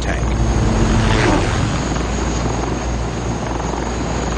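Eurocopter Tiger attack helicopter flying low, its rotor and turbine engines running steadily and loud.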